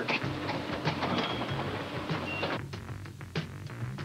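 Background music cue: a low sustained note under light, quick tapping percussion. The higher part of the sound drops away about two and a half seconds in.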